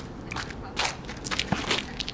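Short sharp knocks of a ball being struck by tennis rackets and bouncing on asphalt, mixed with sneaker steps and scuffs on the asphalt as the players move during a rally, with about half a dozen clicks spaced irregularly.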